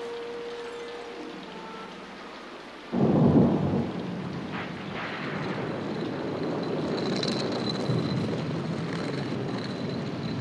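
A hand-turned stone quern grinding grain: the upper millstone rubbing over the lower one in a steady, grating rumble that begins suddenly about three seconds in.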